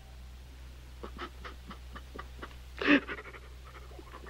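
A man sobbing and catching his breath: a quick run of short, gasping breaths, then a louder voiced sob about three seconds in.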